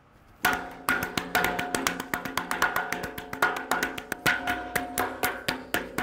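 A rhythmic percussion beat drummed by hand on a hollow metal pole, about four hits a second in an uneven groove, starting about half a second in. The hits carry a ringing metallic tone.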